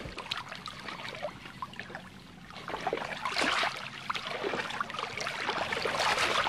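Small waves washing onto a sandy beach: a fizzing wash of surf that swells and fades, rising twice, about three seconds apart.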